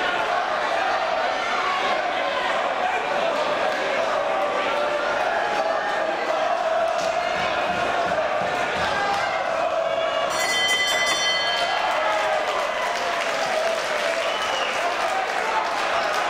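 Boxing hall crowd shouting and calling out during a round, a steady mass of voices. About ten seconds in, the ring bell rings for about a second, ending the round, and the crowd applauds.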